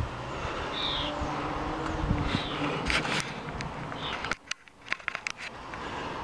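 A bird calling: a short, high call repeated about every one and a half seconds over a steady outdoor background, with a run of sharp clicks and knocks in the second half.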